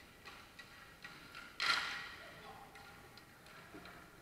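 Hockey sticks clicking on the rink surface, then one sharp crack of a stick shot or puck impact about a second and a half in that rings briefly, with faint distant voices.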